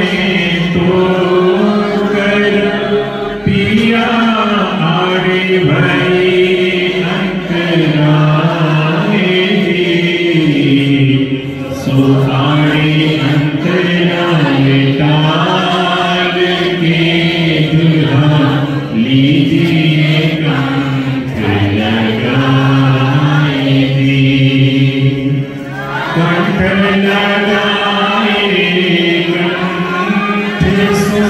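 Devotional chanting of a slow hymn in long, held, gently gliding notes, with brief breaks between phrases.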